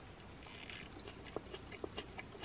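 Faint chewing of a forkful of salad with pickled onion, with a few soft mouth clicks in the second half.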